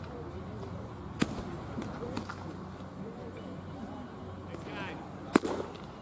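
Two sharp pops of a baseball smacking into a leather glove, a lighter one about a second in and a much louder one near the end.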